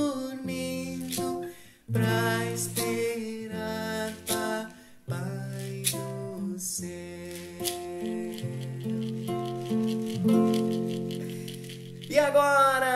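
Classical guitar playing a slow, gentle lullaby-like melody over chords, notes ringing and changing about once a second.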